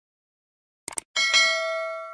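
End-screen subscribe-animation sound effects: two quick mouse clicks just before a second in, then a bright notification-bell ding that rings out and slowly fades.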